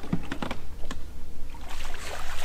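A few sharp clicks and light knocks in the first second, over a steady low hum.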